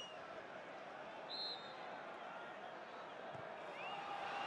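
Steady background noise of a large football stadium crowd, with a short high tone about a second and a half in.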